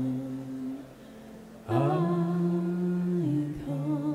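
Voices singing a slow hymn in long held notes. A short break comes about a second in, then a new note slides up into place and is held.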